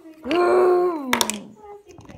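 A high voice lets out a long wordless wail, held at one pitch for most of a second and then sliding down in pitch. A few sharp clicks follow near its end.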